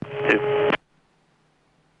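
Short burst of cockpit radio audio, under a second long, with a steady tone and a click as the transmission cuts off.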